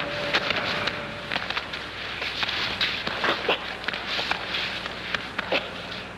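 Judo practitioners grappling on a mat: the rustle and scuffle of judogi and bodies, with scattered sharp slaps or clicks and a few brief falling squeaks.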